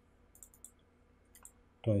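A few faint, quick computer mouse clicks in a quiet pause.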